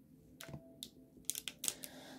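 Diamond painting drill pen tapping resin drills onto the canvas: a few light clicks, coming closer together near the end.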